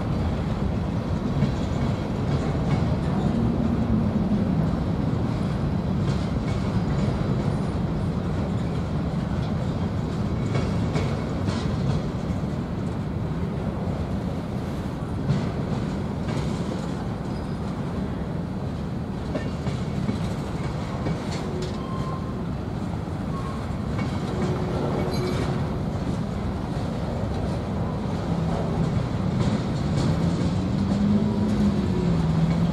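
Freight train of covered hoppers and tank cars rolling past close by: a steady rumble of steel wheels on the rails, with occasional knocks.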